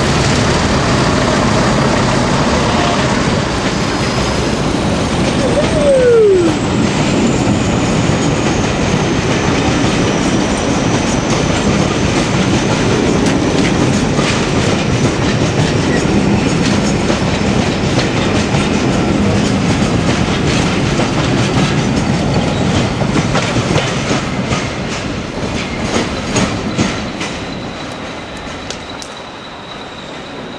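Locomotive-hauled passenger coaches rolling past close by, a steady rumble of wheels on track. There is a brief falling tone about six seconds in. Near the end a run of sharp clicks comes as the last coaches cross rail joints, and then the sound fades as the train draws away.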